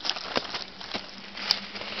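Irregular footsteps crunching on dry dirt while climbing a hillside, with a sharp click about one and a half seconds in.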